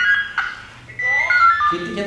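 A short electronic tune of stepping, falling notes, heard twice, with a voice over it near the end.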